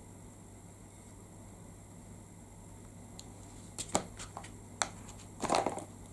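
Quiet room tone for the first few seconds, then several light clicks and taps and a short scuff near the end: a clear acrylic stamp block and ink pad being handled and set down on card and desk as a small stamp is inked and stamped.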